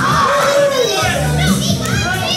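A crowd of children shouting and cheering, many voices overlapping with high, rising and falling calls.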